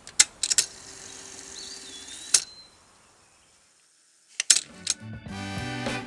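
Several sharp clicks over faint outdoor ambience with a bird call, then a brief hush, more clicks, and music with plucked notes starting near the end.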